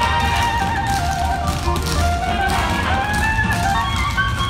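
A group of tap dancers' metal-plated tap shoes striking a wooden stage floor in quick, rhythmic taps over music.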